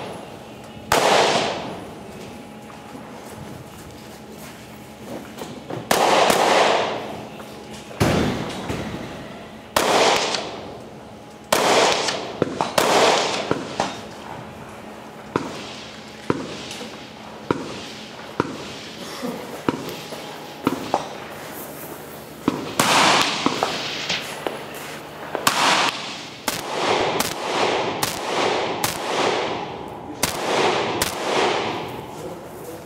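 Semi-automatic rifle shots fired by a practical-shooting competitor: single shots a second or more apart, then quicker strings of several shots, with about two a second near the end. Each shot trails off in a long echo.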